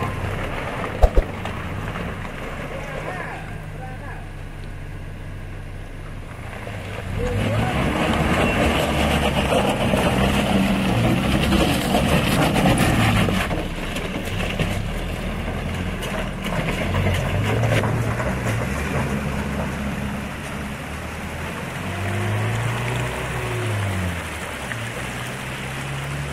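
Engine of a Zamyad Nissan pickup truck running under load as it crawls over loose rock rubble, getting louder about seven seconds in and rising and falling in pitch with the throttle later on. A rough crunching haze of tyres on stones runs under it.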